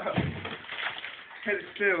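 People laughing and exclaiming, with a loud, wavering laugh near the end.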